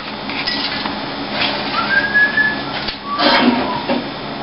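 A short whistled note, rising and then held for about half a second, over a steady noisy background, followed near the end by a brief clatter.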